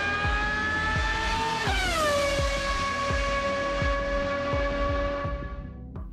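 Formula One car engine passing at speed: its pitch edges up as it approaches, falls sharply about two seconds in as the car goes by, then holds at the lower pitch while fading away. This is the Doppler shift of a passing car.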